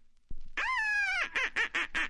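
A duck quacking: one long quack with a slightly falling pitch, then a quick run of short quacks at about five a second.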